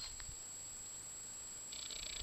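Quiet rural outdoor ambience with a faint low rumble. Near the end an insect starts chirping in a rapid, evenly pulsed high trill.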